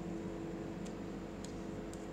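A steady low hum with a faint hiss, like a fan or appliance running, with three faint small ticks about a second apart in the second half.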